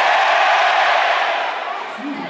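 Concert crowd cheering, a loud wash of many voices that fades off near the end.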